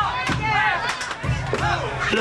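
Live band playing an instrumental passage between sung lines: drum and cymbal hits with notes sliding up and down, and crowd noise underneath.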